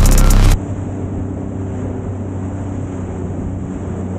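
Loud electronic music cuts off abruptly about half a second in. It leaves a Sea-Doo GTX 300 personal watercraft's engine running at a steady pitch, with wind on the microphone and water rushing past the hull.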